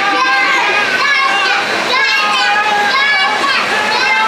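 A young child's excited high-pitched squeals and laughter over the steady rush of air from a hurricane simulator's fan.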